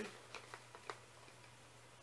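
A few light ticks and soft handling sounds in the first second as a small canvas drawstring bag with ribbon ties is worked open by hand, then only faint room tone.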